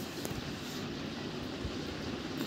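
Steady, even background noise with no distinct sound event standing out.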